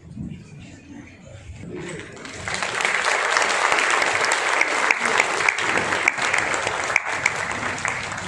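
Applause from a hall audience, many hands clapping. It starts about two seconds in, swells quickly, and begins to die away near the end.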